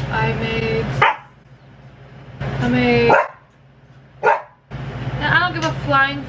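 Pet dogs whining and barking: a held whine, a rising whine about two and a half seconds in, then a quick run of yips and whines near the end.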